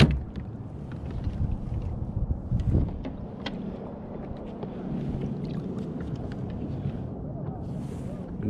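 Scattered clicks and knocks of rod, reel and hands against a plastic fishing kayak over a steady low wind rumble on the microphone, with one sharp knock right at the start and a cluster of knocks around the middle.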